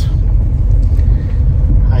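Low, steady rumble of a car's engine and road noise, heard from inside the cabin as it drives slowly.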